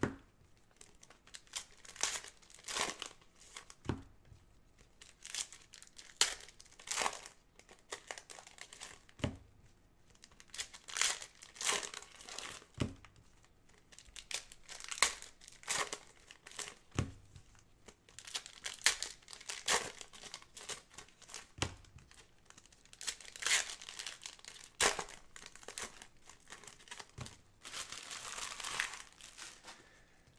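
Foil wrappers of Panini Contenders football card packs crinkling and tearing as gloved hands rip them open, in irregular bursts, with a few soft knocks as packs and cards are handled.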